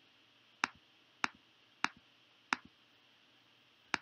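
Computer mouse clicks: four clicks a little over half a second apart, each a press followed quickly by a softer release, and one more click near the end.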